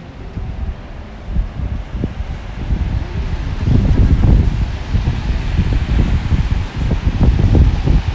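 Wind buffeting the microphone outdoors: an irregular low rumble that grows much louder about halfway through.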